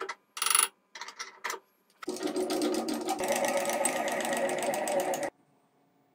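Sharp metal taps and clicks from handling and tapping a machine vise into position on a mill table, followed by a rapid, steady mechanical rattle lasting about three seconds that cuts off suddenly.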